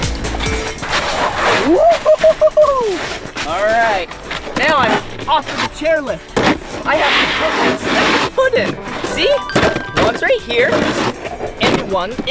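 A man's wordless whoops and sliding vocal glides over background music.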